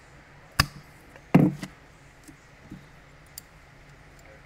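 A hand-held cutter snapping through a thin wooden dowel: a sharp snap about half a second in, then a louder knock just over a second in, followed by a few faint ticks.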